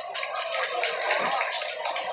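Audience clapping and cheering, a dense crackle of many hands with voices mixed in.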